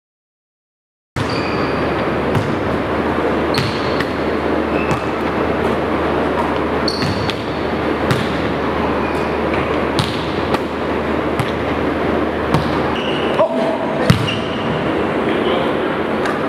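Indoor basketball gym: balls bouncing and knocking on the hardwood floor and backboard, with short sneaker squeaks, over a steady din of voices in a large echoing hall. It starts after about a second of silence.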